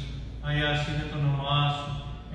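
A man's voice chanting a liturgical phrase in Greek in Byzantine chant. It starts about half a second in and moves through held, level notes that step from pitch to pitch.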